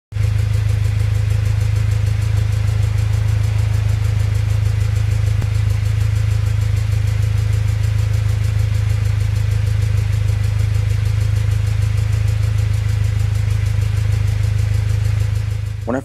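Toyota Tacoma pickup's exhaust idling, heard close at the tailpipe: a loud, steady low drone with a fast, even pulse, while the tailpipe shakes. The old welds where the tailpipe joins the muffler are cracking, and the exhaust leaks there.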